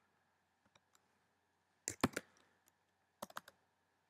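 Computer keyboard keys being typed on: a couple of faint taps, then a quick group of about three keystrokes about two seconds in and another group of about four a little after three seconds.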